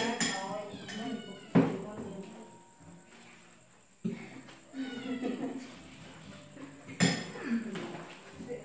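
Plates and serving utensils clinking as food is dished out onto plates, with three sharper knocks about one and a half, four and seven seconds in.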